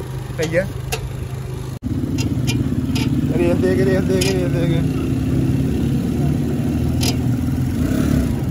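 Motorcycle engine running steadily while riding, heard from on the bike, with a momentary dropout about two seconds in.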